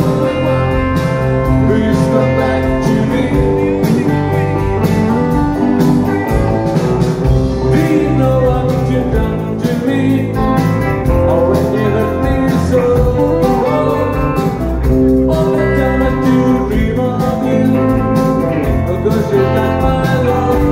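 Live rock band playing loud: distorted electric guitars, electric bass and a drum kit, heard from within the audience.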